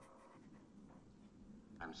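Near silence with a faint steady hiss: a pause between lines of played-back film dialogue. A man's voice starts "I'm sorry" at the very end.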